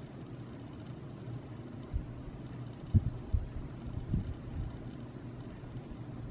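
Quiet room tone with a steady low hum, broken by a few soft low thumps about two, three and four seconds in.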